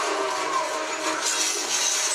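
Soundtrack of a TV battle scene: a dense, steady din of fire and fighting with music underneath.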